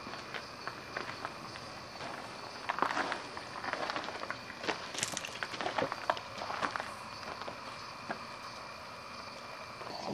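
Footsteps and scuffing on gravel, a cluster of short irregular crunches and clicks in the middle, over faint steady high insect chirring.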